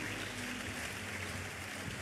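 A pause between phrases of a sermon: steady, low-level ambience of a large hall, a soft even hiss with a faint low hum under it.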